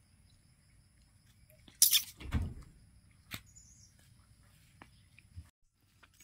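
Leaves and twigs of a longan tree rustling briefly about two seconds in, as a fruit cluster is pulled from the branch, followed by a few faint clicks.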